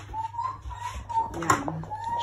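A person whistling a wandering tune, a single pure note that steps up and down, with a sharp click of something hard being knocked about one and a half seconds in.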